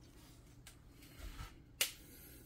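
Mostly quiet, with one sharp plastic click near the end from the engine oil dipstick being handled as it is lifted up a bit in its tube.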